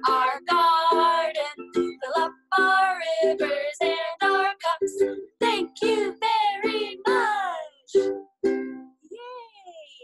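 Two women singing a children's rain song together over a strummed ukulele. The song ends about eight seconds in on a final note that slides down, followed by a couple of last strums and quieter voices.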